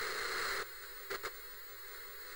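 Hiss of untuned analogue TV static, louder for the first half-second and then dropping to a lower, steadier hiss, with two short clicks just after a second in.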